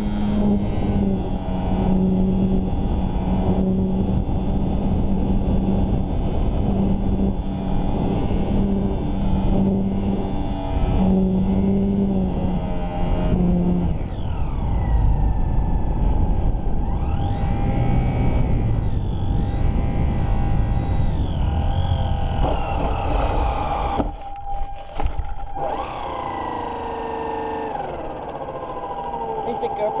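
The electric motor and propeller of a HobbyZone Super Cub S RC plane, heard from a camera mounted on the plane, with wind rushing over the microphone. The motor's pitch steps and swings up and down with the throttle. It cuts out briefly about three-quarters of the way in, then winds down in falling whines as the plane comes in to land.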